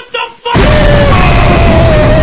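Cartoon dynamite explosion sound effect: about half a second in, a very loud blast starts and carries on as a steady rush of noise, with a faint held tone running through it.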